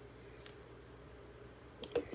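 Quiet room tone with a faint steady hum. There is a faint click about half a second in, then a quick run of clicks and a knock near the end: handling noise from a phone being held and moved.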